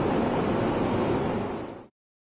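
Steady, noisy hubbub of a crowded commuter train platform as passengers squeeze onto a stopped train. It cuts off suddenly near the end.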